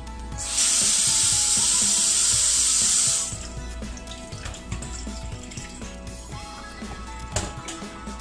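A loud, steady hiss lasting about three seconds, starting about half a second in and cutting off suddenly, over background music.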